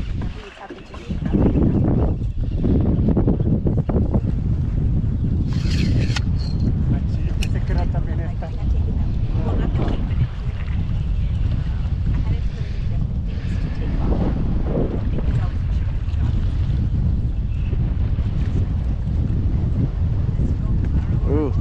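Wind buffeting an action camera's microphone on open water: a steady low rumble that dips briefly near the start, with occasional faint voices.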